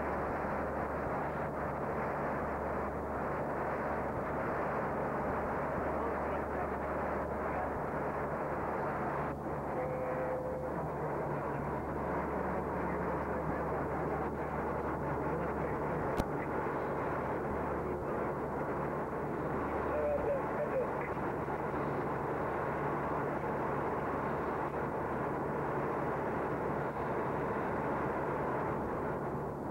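Steady cabin noise inside an airliner's cockpit in flight: a constant rush of airflow with a low engine hum. A single sharp click sounds about halfway through.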